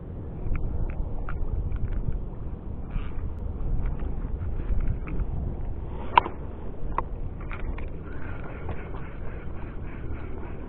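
Wind rumbling on the microphone of a fishing kayak out on open water, with scattered light clicks and taps from the fishing gear. One sharp click comes about six seconds in.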